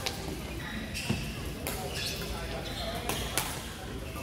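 Badminton rally: several sharp racket strikes on a shuttlecock at uneven intervals, with players' voices in the background.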